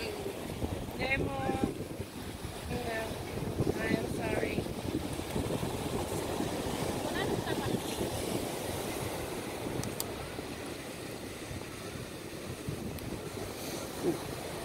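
Surf breaking on a sandy beach, a steady wash of noise with wind buffeting the microphone. Snatches of voices talk over it during the first half.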